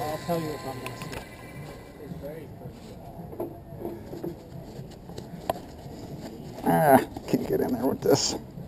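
People talking in the background, with a louder stretch of talk near the end and one sharp click about five and a half seconds in.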